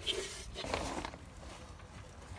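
Faint rustling and scraping of hands and the phone handling the ride's fibreglass body, mostly in the first second, then fading.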